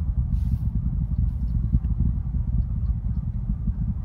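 Distant SpaceX Falcon 9 rocket's first-stage engines heard as a low, steady, crackling rumble, strong enough to set nearby hangars rattling.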